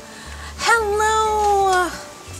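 A young woman's voice singing one long drawn-out note, starting just under a second in and easing slightly down in pitch before it stops near the end, as a sung greeting.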